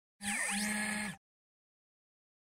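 Short electronic logo sound effect: a buzzing hum with rising and falling pitch sweeps over a hiss, lasting about a second and cutting off sharply.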